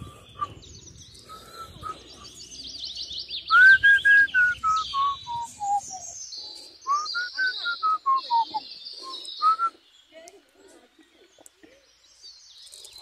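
Wild birds singing: a clear whistled phrase of about ten notes stepping down in pitch, sung twice, over higher rapid twittering from other birds.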